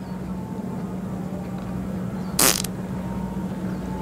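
A short, sharp fart sound about two and a half seconds in, over a steady low hum.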